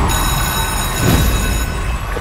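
Title-card sound effect for a TV segment: a deep bass rumble under a high, glittering shimmer of steady tones. The shimmer fades out near the end.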